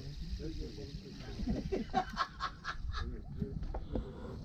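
Men's voices talking, with a short run of quick laughter-like bursts about two seconds in, over a low steady rumble.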